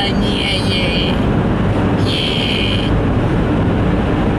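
Steady road and engine noise inside a car cruising at highway speed. A high-pitched sound comes twice over it, for about a second at the start and again about two seconds in.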